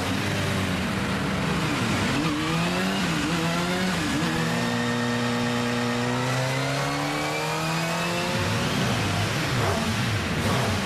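A brand-new Kawasaki motorcycle engine revving during its factory power test on the test stand. The revs rise and fall a few times, then climb slowly and steadily for about four seconds before dropping off near the end, followed by more quick revs.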